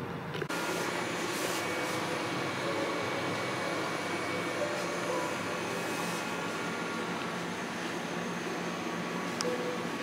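Steady whirring hum of a fan, even throughout, with a few faint unchanging tones under it.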